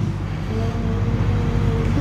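Steady low background rumble, with a faint held tone for about a second and a half in the middle.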